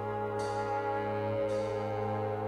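Jazz trombone solo playing long held notes over the big band's sustained backing chords and bass.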